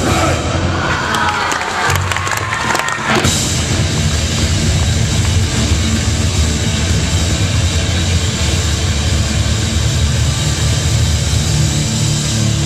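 Hardcore punk band playing live at full volume: distorted guitar, bass guitar and drums. A shouted vocal runs over the band for the first three seconds or so, then the band plays on without it.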